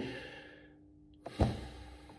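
A man's single short sigh close to the microphone, about one and a half seconds in, with a low breathy puff that fades over half a second. Before it, the room echo of the previous spoken phrase dies away.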